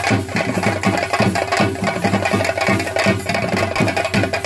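Live chenda drums played with sticks in a fast, steady, dense beat, with ringing overtones above the strokes.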